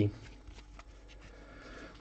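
Hands handling a stack of chrome trading cards: faint rustling with a few light clicks, mostly in the first second.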